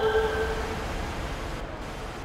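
The fading tail of an electronic glitch track after its beat stops: a single held synth note dies away in the first second, over a rumbling wash of noise that grows steadily quieter.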